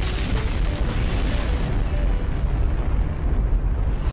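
A large explosion's rumble: a loud, continuous deep rumble with hiss above it, holding steady without a break.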